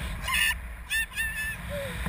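A tandem paragliding passenger gives three short, high-pitched shrieks of delight, over wind buffeting the microphone.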